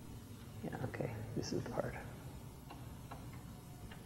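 Faint, indistinct voice murmuring quietly for about a second and a half, followed by a few light clicks.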